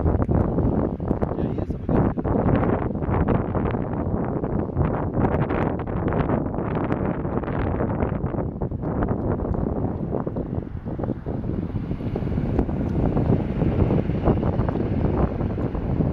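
Wind buffeting the microphone in a loud, fluctuating rumble, with indistinct voices mixed in.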